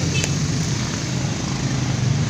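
A small engine running steadily at idle, a low even drone, with a single short click just after the start.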